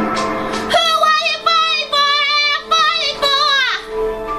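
A high female voice singing a worship song, holding wavering notes over a sustained instrumental accompaniment.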